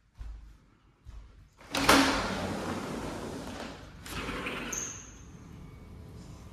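A sliding door being rolled open, starting with a sharp knock about two seconds in and followed by about two seconds of rolling noise that fades out. A second, shorter slide comes about four seconds in.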